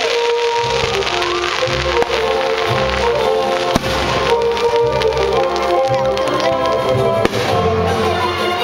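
Aerial fireworks bursting over orchestral music, with sharp cracks about two seconds in, just before four seconds and about seven seconds in.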